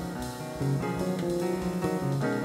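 Live instrumental jazz-tango music from a trio: piano and electric bass playing moving lines of notes, with a drum kit.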